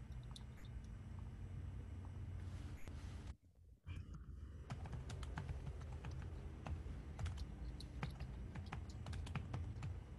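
Computer keyboard typing heard through a video-call microphone: scattered key clicks, coming thicker in the second half, over a low steady hum. The sound drops out briefly to near silence about three and a half seconds in.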